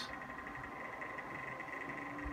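Quiet room tone: a steady faint hiss with a constant high-pitched hum underneath, and no distinct events.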